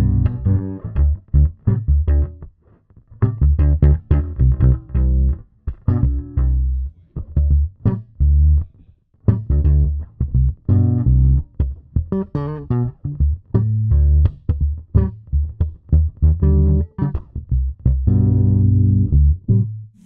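Fodera Monarch Standard P four-string electric bass through an amp, playing plucked chords and notes that ring out, with a few short gaps. The tone control is fully open at first and turned down to halfway about midway through.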